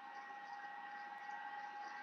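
Faint steady hiss of background noise, with a faint high whine of a few steady tones running under it.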